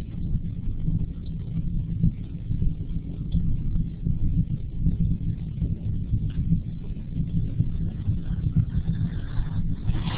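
Low, uneven rumbling noise with no speech.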